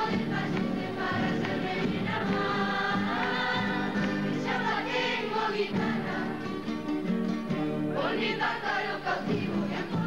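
A group of voices singing together to many strummed acoustic guitars.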